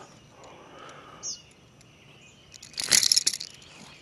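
A burst of crackling, rattling clicks about three seconds in, as the bass hooked on the buzzbait is shaken and grabbed by hand. A bird gives one short chirp about a second in.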